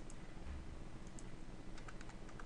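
A few single computer mouse clicks, then a quick run of keyboard keystrokes starting near the end, all faint over a steady low background hum.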